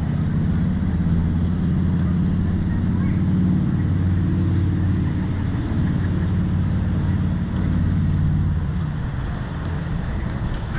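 Steady low hum and rumble, even in level throughout, as the slingshot ride's capsule is let down on its cables.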